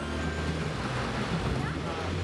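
City street traffic with a steady low engine hum, and people talking.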